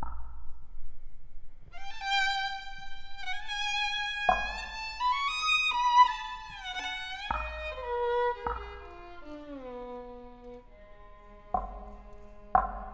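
Violins playing sustained notes that slide downward in pitch, punctuated by four deep mallet strikes on a gourd.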